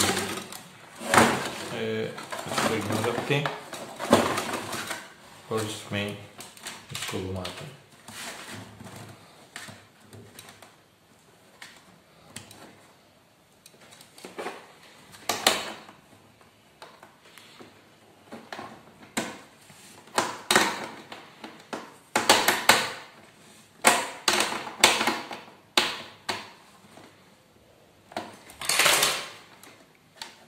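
Irregular clicks and knocks of hands handling the plastic casing and small metal parts of an old Akai cassette player while a switch is fitted into it, coming in clusters in the second half.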